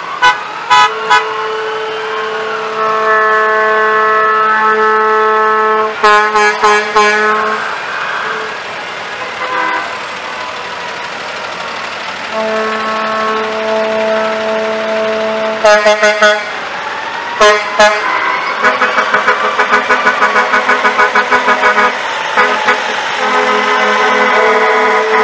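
Heavy-duty tow truck air horns blown in long steady blasts and bursts of short toots as the trucks pass, with a siren rising and falling faintly underneath. Near the end a horn tone pulses rapidly on and off, about five or six times a second.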